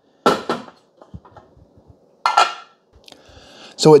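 Hard plastic parts of a Keurig coffee maker being handled: a sharp clack, a few light clicks, then a short scraping rattle, as the water tank and its clear plastic water-filter holder are moved.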